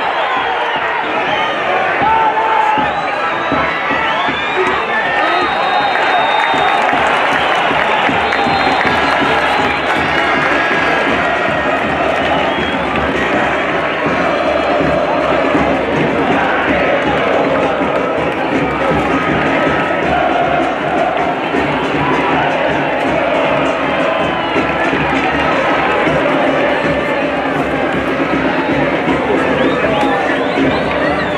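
Football stadium crowd cheering, a dense, steady noise of many voices.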